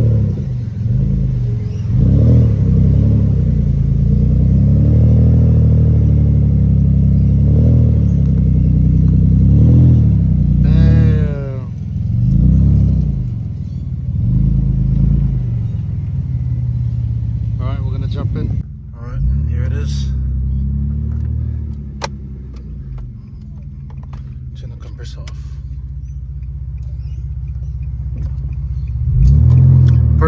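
Nissan Stagea wagon's engine revved over and over, its pitch rising and falling, for the first half or so, then settling into steadier, quieter running for the rest.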